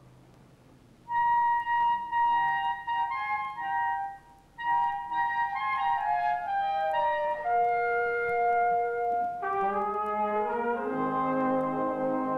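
Military wind band playing. After a quiet first second a single melodic line enters, breaks off briefly around four seconds, and at about nine and a half seconds the rest of the band joins with fuller chords and low brass.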